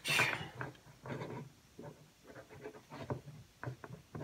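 Faint, intermittent rubbing and light metal clicks of a Hornady steel reloading die and its decapping rod being turned by hand in a single-stage reloading press, the die not tightening down.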